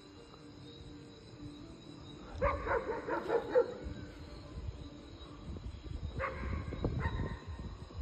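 A dog barking in two quick runs of short barks, the first about two and a half seconds in and the second about six seconds in.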